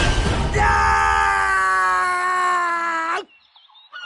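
A man's long scream, held on one pitch that sags slightly, after a brief noisy burst. It cuts off suddenly about three seconds in.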